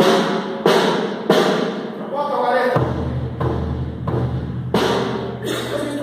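Snare drum struck five times: three hits about two-thirds of a second apart, a pause, then two more near the end. An unpitched drum, sounding no definite note.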